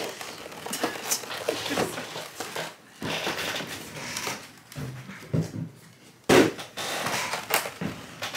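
Plastic parts tray and cardboard box being handled: crackling plastic, rustling and light knocks, with one louder knock about six seconds in as the tray is set down on the table.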